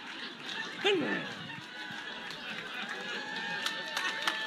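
A person's voice gives one short call that falls steeply in pitch about a second in. Faint steady held tones come in around halfway.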